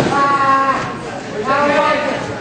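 A person yelling two long, drawn-out shouts, the first right at the start and the second about a second and a half in, over a wrestling-show crowd.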